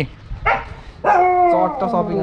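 A dog barking behind a fence: one short bark about half a second in, then a long drawn-out cry that falls slightly in pitch.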